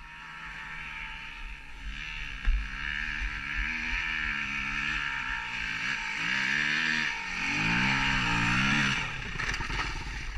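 Dirt bike engine running and being revved, its pitch rising and falling several times, with a sharp knock about two and a half seconds in.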